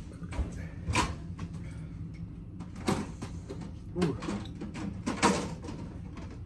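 A few separate knocks and clatters a second or two apart, as something is fetched from the kitchen, with a man's 'ooh' about four seconds in.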